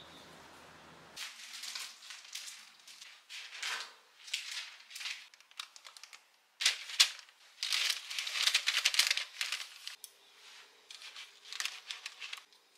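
Baking parchment paper crinkling and rustling in irregular bursts as it is handled on a baking tray, loudest about two-thirds of the way through. A faint steady hum comes in near the end.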